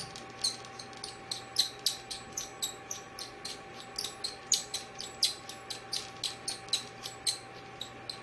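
Rapid, irregular clicking, about three or four clicks a second, as the treatment head is twisted on and off the 980 nm diode laser's fiber-optic handpiece. Under it runs a steady hum from the powered-on laser machine.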